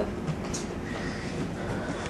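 Steady low background rumble of room noise, with no clear event standing out.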